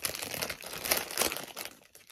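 A foil crisp packet being crinkled and torn open by hand: a dense run of crackling rustles that dies away near the end.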